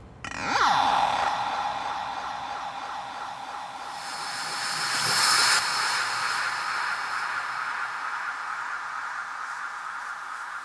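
Beatless passage of progressive psytrance: a synth effect opens with several tones sweeping steeply down in pitch, then a held synth drone continues while a hissing whoosh swells up and cuts off about halfway through.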